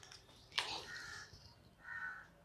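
Whiteboard marker squeaking on the board in two short strokes, after a sharp tap about half a second in.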